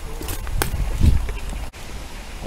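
Low rumble of wind and handling on a handheld camera's microphone during a walk, with a few soft knocks and a thud about a second in. The sound breaks off for an instant near the end, at a cut in the recording.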